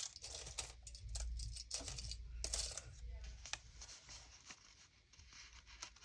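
Paper and card being handled and slid into a junk journal page: soft rustles with light clicks and taps, busiest in the first few seconds and thinning out near the end.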